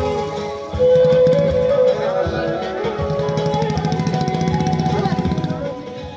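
Music with held melody notes over a fast rhythmic pulse, growing louder about a second in.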